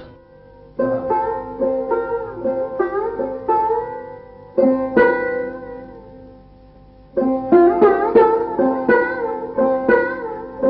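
Sarod played solo: three short phrases of plucked notes, several of them sliding in pitch along the fretless fingerboard, each phrase ringing on and fading into a short pause before the next.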